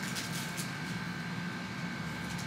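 Steady room hum with a constant thin high tone, typical of air conditioning or ventilation, with a few soft rustles in the first second as Bible pages are turned.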